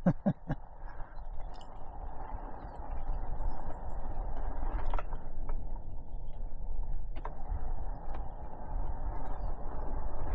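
Wind noise on the microphone over the steady running noise of an electric mountain bike on the trail, with scattered small clicks and knocks.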